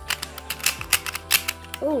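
Plastic Pyraminx-type twisty puzzle being turned fast, its pieces clicking and clacking in a quick irregular run of snaps.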